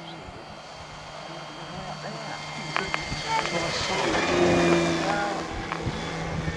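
Engine of a large radio-controlled model autogyro flying past, its steady note swelling to a peak about halfway through and then easing off.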